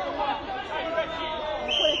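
Overlapping voices of children and adults chattering and calling out around a youth rugby ruck, with a brief shrill steady tone near the end.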